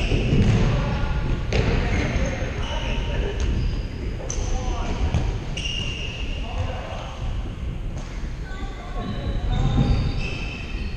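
A futsal ball being kicked and bouncing on a hardwood sports-hall floor: sharp knocks every second or two, echoing in the large hall, with players' voices calling across the court.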